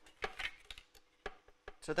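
Half a dozen light, scattered clicks and taps from a paper trimmer as cardstock is lined up under its cutting arm and trimmed.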